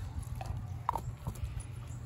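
A dog moving about on dry grass close by: irregular soft thumps of its paws over a steady low rumble, with a brief higher blip about a second in.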